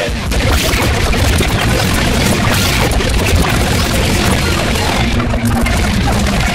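Loud, dense noise with a heavy low rumble and no clear voice or tune: a video-tape fast-forward sound effect.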